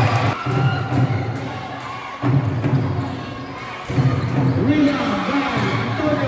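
Live basketball game sound in a gym hall: a ball bouncing on the court, with players' and spectators' voices and shouts mixed in. The sound jumps abruptly about twice along the way, as if cut between clips.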